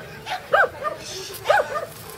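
A small dog barking in short, high yips during an agility run, four times in two pairs about a second apart, each loud yip followed by a softer one.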